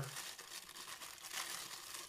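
A thin clear plastic bag crinkling continuously as hands handle it and work soft plastic swim baits out of it.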